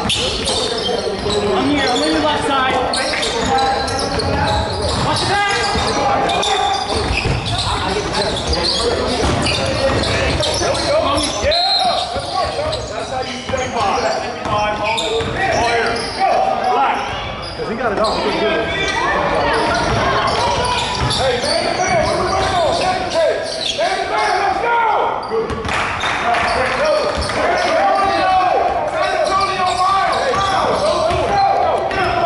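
Basketball game in a reverberant gym: a ball bouncing on the hardwood court amid a steady mix of voices from players and spectators calling out.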